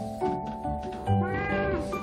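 An elderly cat, hidden under a duvet, gives a single drawn-out meow about a second in that rises and then falls in pitch. Background music plays underneath.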